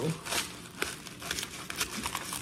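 Crisp toasted sandwich bread crackling in many short, irregular crackles as a knife saws through a crusty breaded-chicken sandwich and a bite is taken from another.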